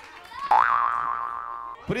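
A comedic sound effect: one pitched tone starts suddenly about half a second in, bends up in pitch, then holds for just over a second and fades.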